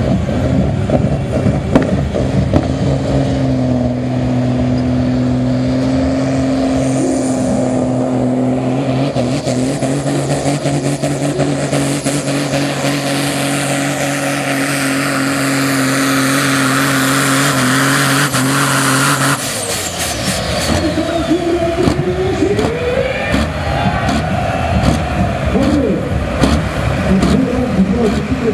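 Pulling tractor's engine at full throttle, a steady heavy drone as it hauls the weight sled down the track. About nineteen seconds in the drone cuts off abruptly at the end of the pull, leaving a lower, uneven engine sound.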